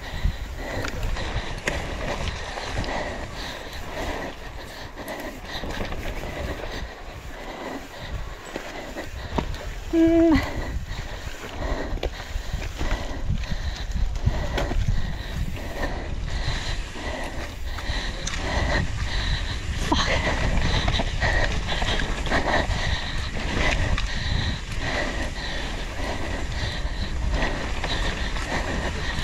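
Downhill mountain bike ridden fast down a rough track, heard from a camera on the rider: continuous rattling and knocking of the bike over ruts and roots over a steady low rumble of wind and tyres. The rider gives a short exclamation about ten seconds in.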